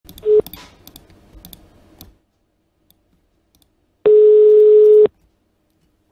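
Telephone ringback tone heard over the call: a single steady beep lasting about a second, about four seconds in, the signal that the called number is ringing. Before it, a short beep and a few clicks in the first two seconds.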